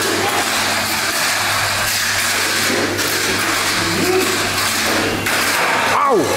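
Tamiya Mini 4WD cars running laps on a plastic slot-less track: a steady whir of their small electric motors and wheels.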